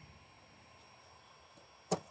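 A faint steady hiss, then a single sharp click near the end as the small pane of window glass pops up out of its wooden sash, freed from the old glazing putty.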